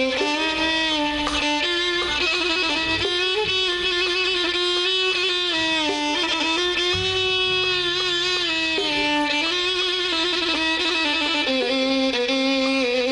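An Arab ensemble plays an instrumental passage, the violins carrying a slow melody of long held notes over oud and bass. A low bass note comes in about seven seconds in.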